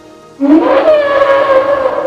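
The film's Brachiosaurus giving one long, loud, hooting call: it breaks in suddenly about half a second in, starts low, leaps up in pitch, then sags slowly as it is held.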